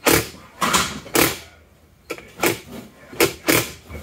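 A series of short creaks and scrapes, about seven in four seconds, from the transfer case and adapter assembly being handled and shifted on the bench while its angle is set.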